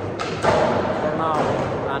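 A skateboard hitting the concrete with a thud about half a second in, after a lighter knock just before it, over the low rumble of wheels rolling and voices in a concrete skatepark hall.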